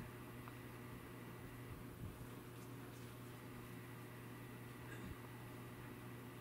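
Quiet room tone with a steady low hum. Near 2 s and 5 s there are two faint, brief soft sounds from hands handling crocheted yarn.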